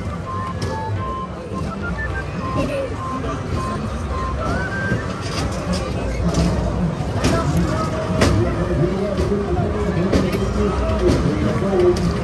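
Fairground ride music: a simple electronic tune of single notes plays for the first few seconds. It is heard over crowd chatter and a steady low rumble, with voices louder in the second half.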